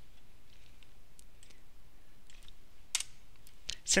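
A few scattered light clicks from a computer mouse and keyboard while a script is being edited, with one sharper click about three seconds in.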